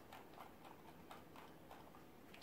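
Near silence: room tone with a few faint, irregular clicks of a computer mouse's scroll wheel being turned.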